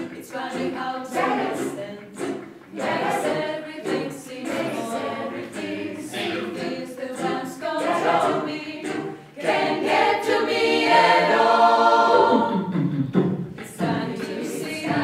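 Mixed chamber choir of women's and men's voices singing a cappella. The singing swells noticeably louder about ten seconds in.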